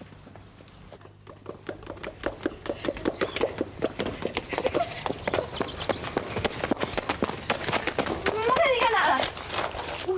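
Quick, irregular steps clattering on hard ground, growing louder as they come on, with a short voice-like sound near the end.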